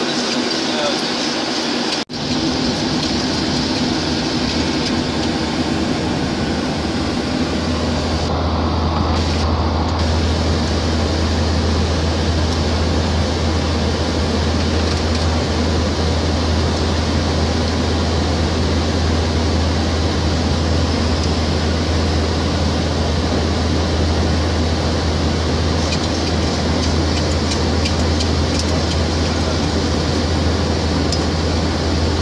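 Steady in-flight noise inside a Boeing 737 flight deck: a constant rush of airflow and engine noise, broken off for an instant about two seconds in. A low steady hum joins it about a quarter of the way through.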